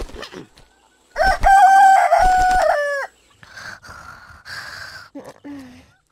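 A rooster crows once, a long cock-a-doodle-doo beginning about a second in and lasting nearly two seconds. It holds a steady pitch and falls off at the end.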